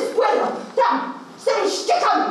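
A woman speaking Polish in a rasping, put-on old-woman character voice for a puppet, in short, loud outbursts with sharp rises and falls in pitch.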